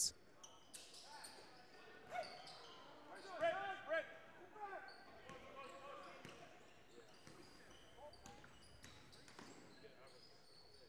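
A basketball bounced on a hardwood gym floor in repeated sharp thuds, with short high sneaker squeaks. Voices on the court call out briefly about three to four seconds in.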